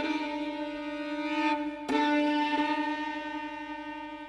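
Orchestral music from a twentieth-century violin concerto: bowed strings hold long, wavering notes, a new note enters about two seconds in, and the sound then slowly grows quieter.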